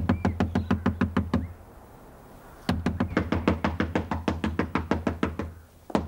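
Rapid, insistent pounding on a wooden door, about seven or eight blows a second, each with a deep thud. It comes in bouts: a short one, a pause of about a second, a longer one, and a few more blows starting again at the very end.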